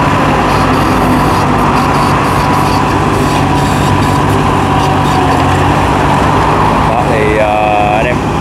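Hitachi EX15-1 mini excavator's diesel engine running steadily under load, with a steady high whine, as the boom pushes down and lifts the machine's tracks off the ground.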